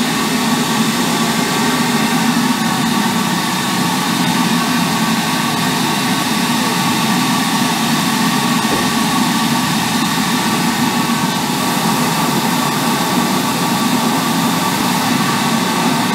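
Dry abrasive blasting in a sandblast cabinet: compressed air and 100-grit garnet sand blasting from the gun onto a rusty steel motorcycle frame, a loud steady hiss with a steady hum beneath. The blast is stripping the rust back to bare steel before powder coating.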